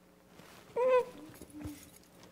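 A short, high-pitched voice sound about a second in, a person making a whimper-like noise, with a fainter short tone after it.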